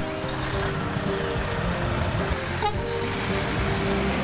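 Highway traffic, with trucks and cars running past, mixed with background music of held notes. A brief falling squeal comes about two and a half seconds in.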